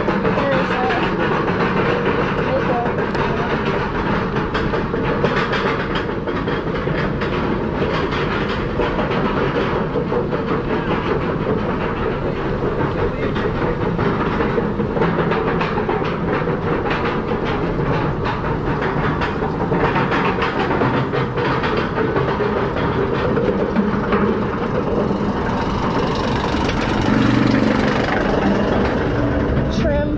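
Chain lift of a B&M floorless roller coaster hauling the train up the lift hill, a steady loud rattle with many sharp clicks running through it.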